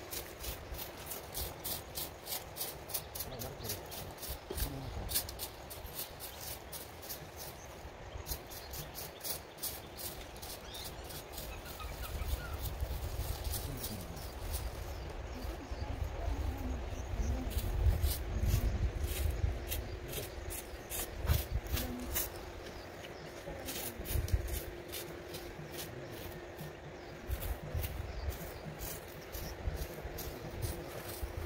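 Outdoor grass clearing with hand tools: rapid light ticks and scrapes from the tools, wind buffeting the microphone in irregular low rumbles, and a faint steady hum throughout.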